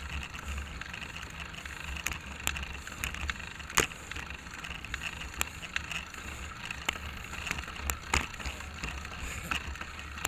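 Riding noise picked up by a bike-mounted camera: a steady rumble of road and wind with irregular sharp clicks and rattles from the bicycle and mount over bumps, the loudest about four seconds in and another just after eight.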